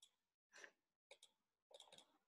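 Near silence broken by a few faint computer mouse clicks, spaced about half a second apart.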